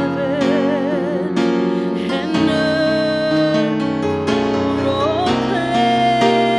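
A woman singing a worship song into a microphone over instrumental accompaniment, holding long notes with a wavering vibrato.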